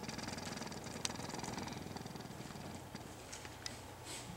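Low steady hum with a fast flutter, and a few faint clicks.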